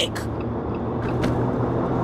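Steady engine and road noise inside a moving car's cabin: a low, even hum.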